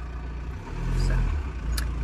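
Low vehicle rumble heard from inside a parked car, swelling for about a second in the middle, with a few soft clicks and rustles from a wet wipe being handled.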